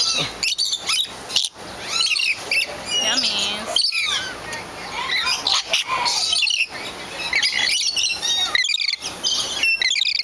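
A flock of lorikeets and lories calling all together, many short high chirps and squawks overlapping one after another.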